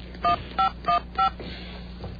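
Mobile phone keypad tones as a number is dialled: four short two-tone beeps, about a third of a second apart, that stop a little over a second in.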